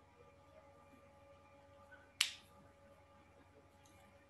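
A single sharp click about two seconds in, over a faint steady hum.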